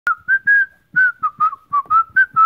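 A person whistling a tune: a quick run of about nine short notes in a narrow, fairly high range, one held a little longer near the start, after a sharp click at the very beginning.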